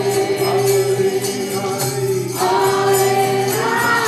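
Live kirtan: a group chanting together over a held harmonium drone, with a steady beat of small metallic hand cymbals. The voices break off briefly about halfway and come back in on the next phrase.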